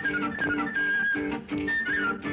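Lively folk dance tune on harmonica and guitar: a high melody in quick falling runs over strummed chords.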